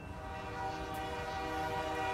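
Train horn sounding one long steady chord of several tones, growing slightly louder as the train approaches.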